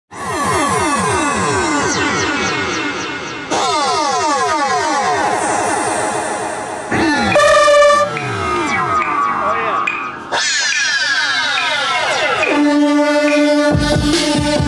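Electronic synthesizer sounds opening a synthpunk song: several overlapping downward pitch sweeps that restart abruptly about three and a half and ten seconds in, with a short held bright tone around seven to eight seconds. Near the end it settles into a steady held chord.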